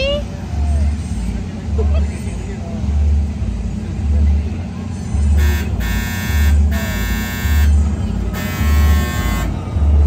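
Fairground ride's loudspeakers: a heavy bass beat about once a second. From about halfway through, a harsh buzzing tone sounds in three bursts that start and stop sharply.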